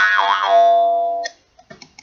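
Jaw harp plucked once: a twanging drone whose overtones wobble briefly as the mouth shape changes, then hold steady and fade before stopping abruptly a little past a second in. A few faint clicks follow near the end.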